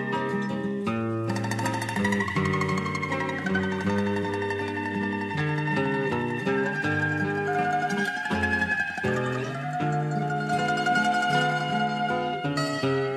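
Cavaquinho playing a choro melody, with lower accompanying notes underneath.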